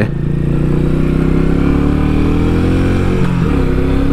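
Royal Enfield Meteor 350's air-cooled 349cc single-cylinder engine pulling under acceleration, its pitch rising steadily. About three seconds in the pitch drops suddenly with a gear change, then climbs again.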